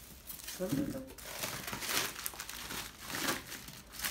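Clear plastic wrap crinkling and rustling in irregular bursts as an item is wrapped by hand.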